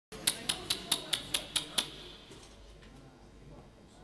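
A quick run of eight sharp, evenly spaced hand claps, about four a second, stopping about two seconds in, then low room murmur.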